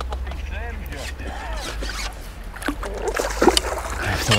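A hooked fish splashing at the surface as it is drawn into a landing net, with a sharper splash about three and a half seconds in, over a steady low wind rumble on the microphone.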